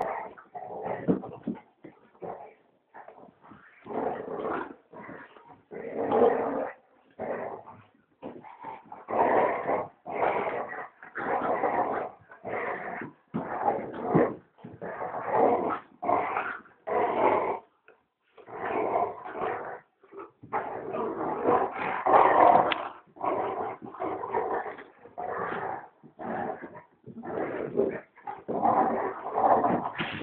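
Two dogs, a big dog and a puppy, growling at each other in play fighting: rough growls in repeated short bouts with brief pauses between, the sign of rough play rather than a real fight.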